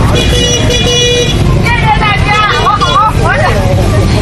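Motorcycles idling in a group with a steady low rumble. A horn sounds for about a second near the start, then voices call out over the engines.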